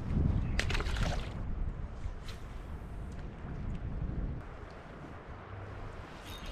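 Wind rumbling on the microphone over creek water moving around a kayak, with a short burst of noise about half a second in.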